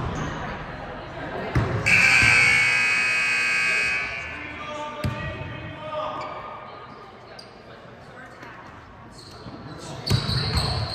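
Gym scoreboard buzzer sounding steadily for about two seconds, starting about two seconds in. Around it, a basketball bounces on the hardwood court with sharp knocks, in an echoing gym.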